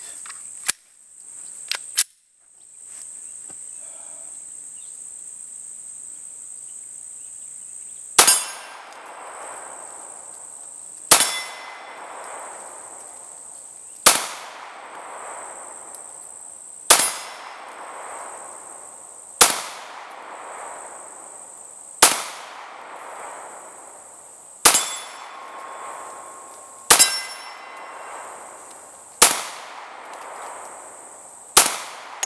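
Nine shots from a Glock 20 SF 10 mm pistol firing Remington UMC jacketed hollow points, starting about eight seconds in and spaced two to three seconds apart. Each is a sharp crack with a decaying echo, and some carry a metallic ping from the steel target. A steady high insect drone runs underneath, and a few light clicks come in the first two seconds.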